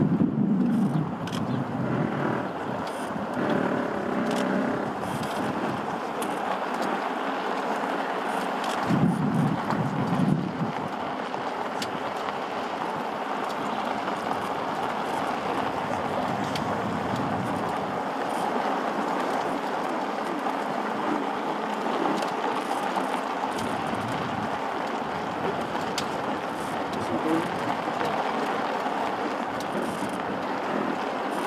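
Golf cart driving along a dirt path: a steady noise of the cart running and its tyres on the ground, with a louder low rumble at the start and again about nine seconds in.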